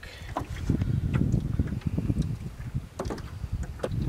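Lake water splashing and lapping at the side of a small boat around hands holding a brook trout in the water, with a low rumble of wind on the microphone and a few small splashes.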